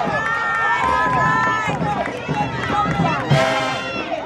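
Parade crowd with many voices talking, shouting and cheering over one another, and a louder burst of noise a little after three seconds in.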